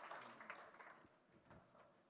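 Faint scattered applause dying away in the first second, then near silence.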